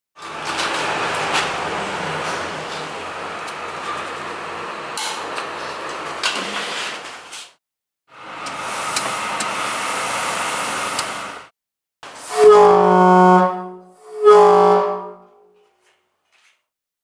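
Two blasts of an air horn near the end, each about a second long and holding one steady pitch, after two long stretches of hissing, rattling noise.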